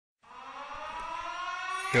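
Siren-like rising tone opening a hip-hop track's intro: it fades in over about the first second and climbs slowly in pitch, several tones sounding together.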